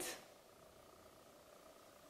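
Near silence: room tone, after a voice trails off at the very start.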